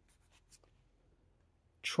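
Faint sliding scrapes of trading cards being drawn across one another as a card is pulled from the front of a hand-held stack and moved to the back: a few short scrapes in the first half second.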